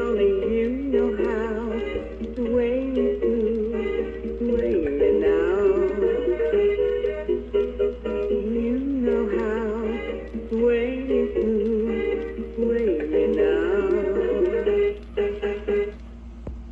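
PBC International musical plush bear playing its built-in song: a wavering vibrato melody line over steady backing, stopping near the end.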